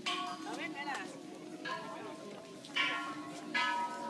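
Thai temple bells struck one after another, four strikes in the space of about four seconds, each ringing on and overlapping the next.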